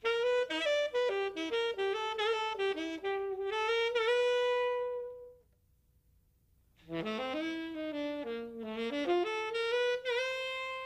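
Solo alto saxophone playing a melodic phrase of quick notes that ends on a held note about five seconds in. After a short pause a second phrase begins with a low note that slides upward.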